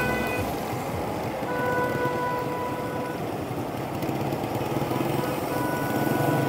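Road and traffic noise heard while riding through city traffic, with a steady pitched tone that sounds three times, each time for about a second or so.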